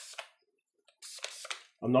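Faint handling noise of rifle parts being worked by hand on the bench: a few light clicks that die away, then a short rustle about a second in.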